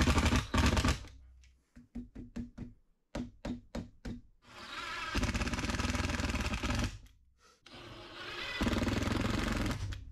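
Cordless drill/driver driving screws through hinges into a wooden wall: a short run, then several quick pulses of the trigger, then two longer runs of a few seconds each as screws go home.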